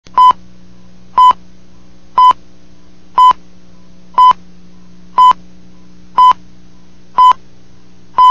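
Videotape leader countdown beeps: a short, loud test-tone pip once a second, eight times, marking the seconds of the pre-roll countdown. A steady low hum runs underneath.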